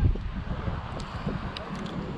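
Wind buffeting the microphone in gusts, with a few faint clicks.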